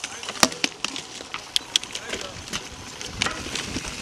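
Mountain bike rolling fast over leaf-covered dirt singletrack: a steady rush of tyre and trail noise with many sharp, irregular clicks and rattles from the bike.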